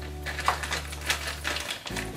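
Plastic mailer bag crinkling and rustling as it is handled and moved, with a quick series of sharp crackles, the loudest about half a second in and again about a second in.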